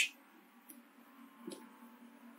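Quiet room tone with a faint steady hum and two small clicks, the second and louder one about one and a half seconds in.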